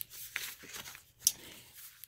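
Paper tags and card stock rustling and sliding against each other as they are handled, with two brief sharper papery scrapes, one shortly after the start and one around the middle.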